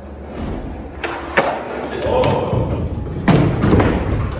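Skateboard wheels rolling on a wooden floor. A sharp snap of the board's tail comes about a second and a half in, an ollie attempt, and a heavy thud near the end as the skater falls.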